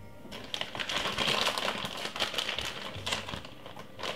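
Crinkling and rustling with many small clicks, as of light material being handled, starting about half a second in and dying away near the end.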